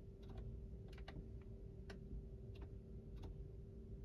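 Faint, irregular clicks from the Tesla Model 3's left steering-wheel scroll wheel being rolled to adjust the side mirror, over a steady low hum.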